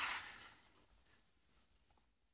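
Scratchy rustle of a carpet gripper's nail and plastic base being pressed and worked into car floor carpet, fading out over about a second and a half.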